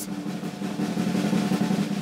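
A snare drum roll in the cartoon's music, rising slightly over a steady low held note, a build-up cue that cuts off at the end.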